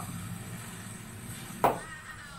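A partly filled plastic water bottle being flipped and knocking down onto the carpeted floor: a single sharp knock about one and a half seconds in.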